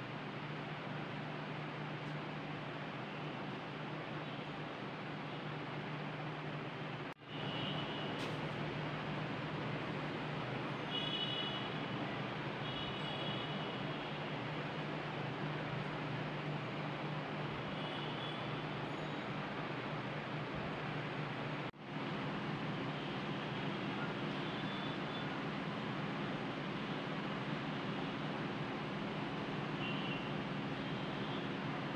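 Steady background hum and hiss with a low droning tone, cut by two brief dropouts, about seven and twenty-two seconds in.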